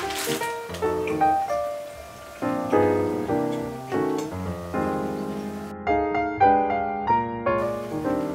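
Background music carried by a piano-like keyboard playing a light melody of short notes, with the treble briefly cut away about six seconds in.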